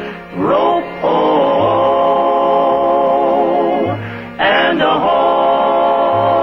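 Choir singing long held notes that swoop upward into each new note, over low bass notes about every two seconds.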